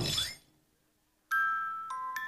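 A voice trails off at the start, then silence. About a second in, a hand-cranked music box starts to play chiming, bell-like notes, each ringing and fading, with a second note near the end.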